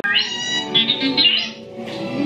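Electronic beeps and warbling whistles of a BB-8 droid figure: a rising whistle, then a run of quick chirps, fading after about a second and a half, over steady background music.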